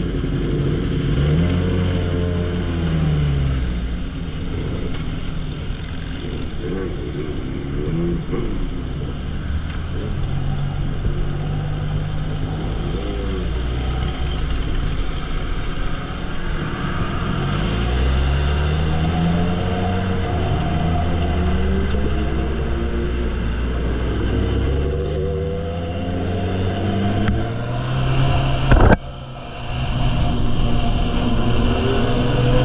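Sport motorcycle engine ridden through traffic, its pitch climbing and falling repeatedly as it revs and shifts through the gears, over steady wind and road noise. A single sharp crack sounds near the end.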